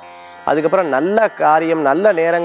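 A man talking. His speech begins about half a second in, after a short pause that holds only a steady low buzz.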